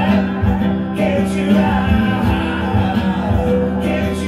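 Live rock performance: a guitar played with a man singing, over a sustained low note and a low beat about twice a second.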